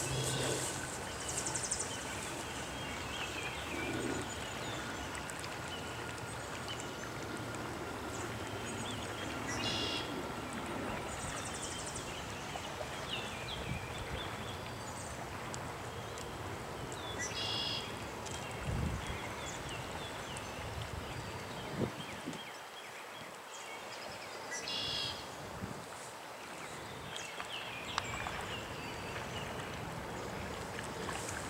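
Outdoor ambience by a flooded wetland with carp spawning in the shallows: a steady rushing noise of water and wind, short high bird chirps every few seconds, and a few dull thumps and splashes.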